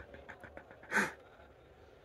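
A man's laughter trailing off in soft breathy pulses, then one sharp breathy exhale, like a snort of laughter, about a second in.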